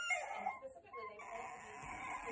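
A toddler fussing, with short whiny whimpers.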